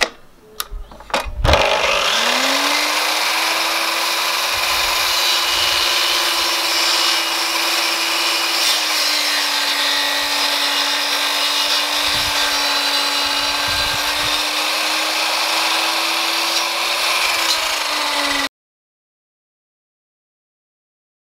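Electric mitre saw starting with a rising whine after a few clicks, then running steadily as it cuts through softwood timber; the motor's pitch dips slightly about nine seconds in. The sound cuts off abruptly near the end.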